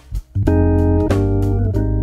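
Hammond B3 organ played live: after a brief break at the start, sustained chords on the manuals ring out over bass pedal notes from about half a second in, with the chord changing twice.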